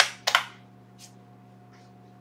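Three short clicks of computer keyboard keys being pressed, the first two close together and louder, over a faint steady electrical hum.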